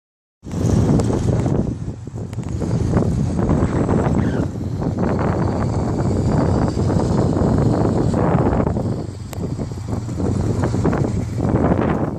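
Small electric kids' scooter rolling across asphalt with a dog riding it, its motor and small wheels making a steady low rumble, mixed with loud wind noise on the phone microphone.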